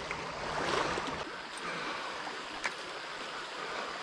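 Shallow creek water flowing, a steady rushing wash, with a few light ticks.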